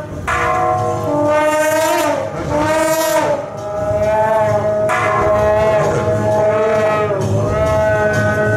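Suona (Chinese shawm) playing a loud, nasal melody of held notes that slide and waver in pitch, with short breaks between phrases a little over two and three seconds in.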